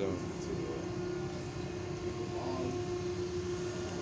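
Steady drone of running ship's machinery on deck, with a steady hum through it.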